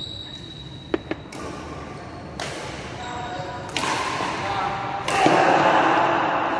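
Badminton hall sounds: two sharp taps in quick succession about a second in, typical of a racket striking a shuttlecock, then players' voices growing louder near the end, echoing in the large hall.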